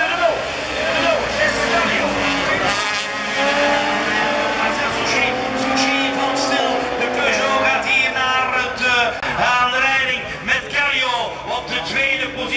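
Several rallycross cars racing past in a pack, their engines repeatedly revving up and dropping through gear changes as they take a corner and accelerate away.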